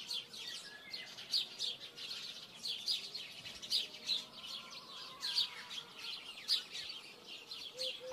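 Small birds chirping: many short, high chirps repeating irregularly throughout.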